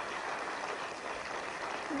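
Large audience applauding, a steady even clapping.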